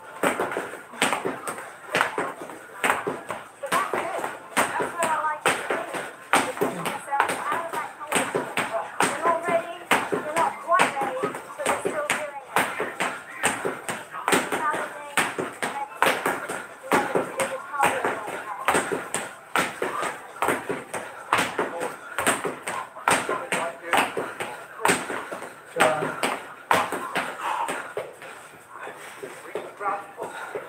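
Feet landing on a hard floor during a jumping cardio workout, sharp thuds coming about once or twice a second, with a voice running underneath.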